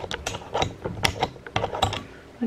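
Handling of a camera on a tripod as it is worked loose from the mount: a quick, irregular run of sharp clicks and rattles close to the microphone.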